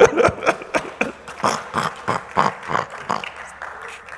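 A man laughing hard into a handheld microphone in quick, breathy, wheezing bursts, several a second, loudest at first and tailing off toward the end.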